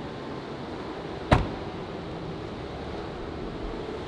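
A car door, the Dodge Demon's driver door, shutting once with a single sharp thud about a second in, over a steady background hum.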